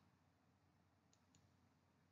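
Near silence, with two faint, quick clicks a moment apart about a second in.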